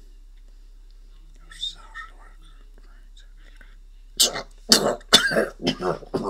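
A person's voice making sounds that form no words: faint whispering about two seconds in, then a run of short, loud vocal bursts over the last two seconds.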